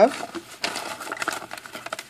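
Faint rustling and crinkling of a padded paper mailer as items are slid out of it by hand, with a few small clicks and taps.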